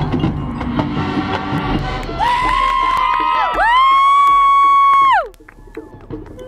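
Marching band playing: a full ensemble passage, then loud held high notes that slide down in pitch. The last and loudest is held about a second before falling off, and the sound drops away suddenly about five seconds in.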